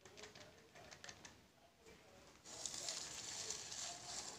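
Wire whisk scraping thick cake batter out of a mixing bowl into a cake pan: light scattered clicks of the whisk on the bowl, then a louder scraping from about two and a half seconds in.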